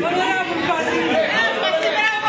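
Several people talking at once in a large room: overlapping, indistinct chatter with no single clear speaker.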